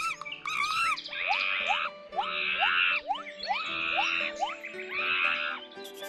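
Cartoon chimpanzee sound effect: a couple of hooting calls, then four rasping calls about a second apart, over light background music.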